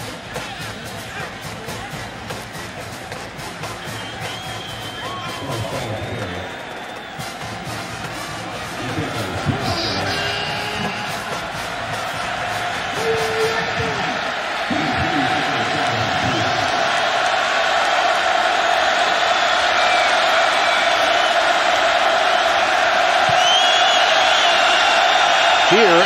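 Stadium crowd noise growing steadily louder into a roar, with music and scattered shouts mixed in. It is the home crowd building up noise while the visiting offense lines up at the line of scrimmage.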